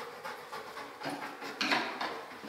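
Dog panting as it searches with its nose over wooden scent boxes, with one louder breathy burst near the end.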